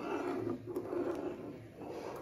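A steel ladle slowly stirring milk in a metal kadhai: a low, soft sloshing with a couple of faint clicks of the ladle against the pan.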